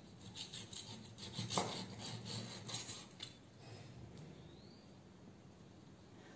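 Chef's knife slicing through cooked steak on a wooden cutting board: a run of short sawing strokes over the first three seconds or so, then fainter.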